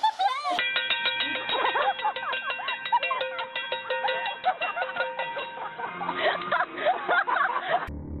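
A metal pot being banged rapidly, about four or five strikes a second, with a steady ringing tone over the strikes. Voices cry out over the banging.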